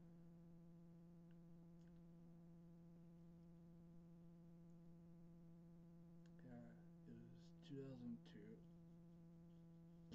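Faint steady electrical buzz, a mains hum made of several evenly spaced tones, with a few soft spoken words near the end.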